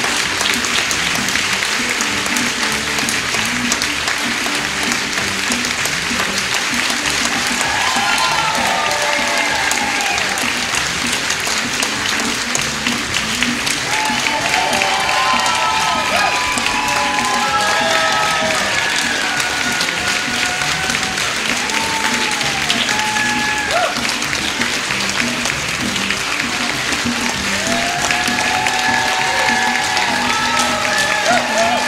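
Theatre audience applauding steadily, with music playing along; a melody comes in about eight seconds in.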